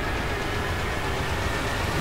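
Film-trailer soundtrack: a loud, steady rumble with hiss across the whole range.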